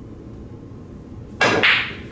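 Pool cue striking the cue ball with a sharp click about a second and a half in, followed about a quarter second later by a louder click as the moving cue ball makes contact.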